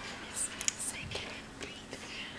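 Faint whispering and breathy voice sounds, with two sharp clicks a little over half a second in.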